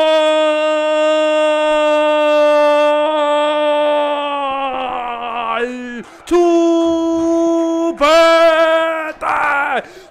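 A male sports commentator's drawn-out goal scream, one long cry held on a steady pitch for about six seconds, then two shorter held shouts and a wavering cry near the end.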